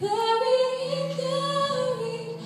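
Church choir singing, a new phrase coming in sharply at the start with long held notes.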